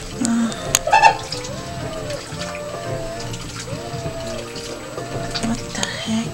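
Background music with a melody, over a quiet top-loading washing machine with water running into its drum. There are a few sharp clicks about a second in.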